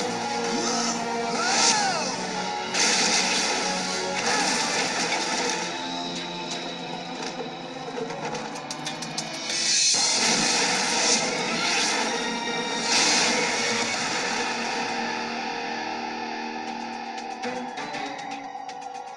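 Orchestral-style action score from an animated TV series, with several sudden noisy hits of fight sound effects, about four of them, layered over the music.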